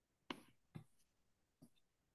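Three short, sharp clicks, irregularly spaced, against near silence.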